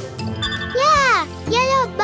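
Light children's cartoon music with a baby character's wordless vocal calls over it: two calls about a second apart, each rising then falling in pitch.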